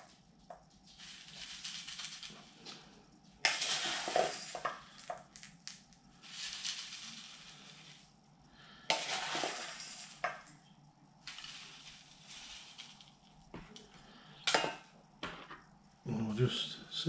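Gritty bonsai soil being scooped from an enamel bowl with a plastic scoop and poured into a bonsai pot, in four or five rustling, rattling pours of a second or two each. A sharp knock comes near the end.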